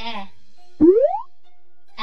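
A cartoon 'boing' sound effect: one quick upward-gliding pitch lasting under half a second, about a second in, over soft background music.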